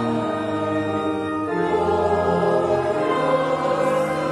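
Choir and congregation singing slow, held chords with organ accompaniment.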